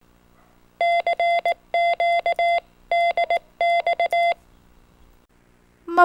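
A Morse code (CW) tone of about 700 Hz beeping out four short groups of long and short dashes and dots. It sounds like a radio's CW sidetone or a practice oscillator.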